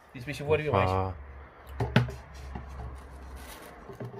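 A man's single drawn-out word, then one sharp knock of a wooden spoon against a glass jar as bee pollen is scooped out, followed by soft handling noise.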